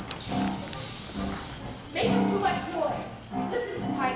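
A chorus of young voices singing and chanting a stage musical number over instrumental accompaniment. About halfway through come high, sliding vocal calls.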